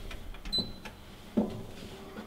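A short, high electronic beep inside a moving lift, about half a second in, then a dull knock about a second and a half in, over the lift's quiet hum.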